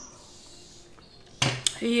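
A glass cup set down on a hard surface with a knock and clink about one and a half seconds in, followed by a smaller click.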